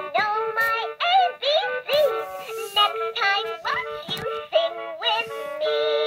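LeapFrog Alphabet Pal caterpillar toy playing one of its songs through its small speaker: an electronic tune of short, repeated notes with a sung voice over it. On full batteries it sounds a little bit high-pitched.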